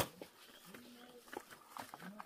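Tableware being set down and handled on the ground: a sharp knock of a plate put down right at the start, then a few lighter clinks.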